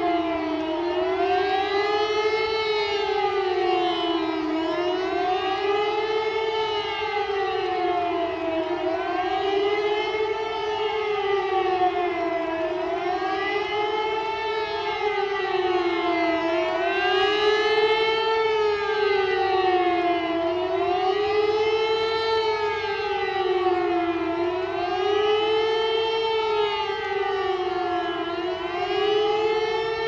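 A siren wailing, its pitch rising and falling over and over, about once every two seconds.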